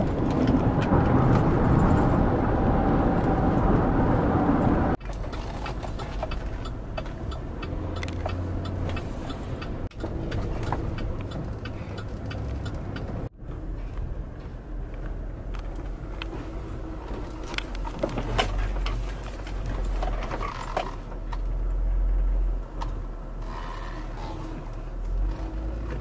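Road and engine noise inside a moving car's cabin, in several short stretches that change abruptly. It is loudest for the first few seconds, then settles to a lower, steadier rumble.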